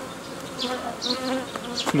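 Honeybees buzzing around an open hive, a steady hum that wavers slightly in pitch.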